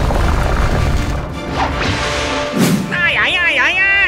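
Cartoon action soundtrack: music over a heavy low rumble with booming impacts, then, about three seconds in, a wavering, high-pitched yell.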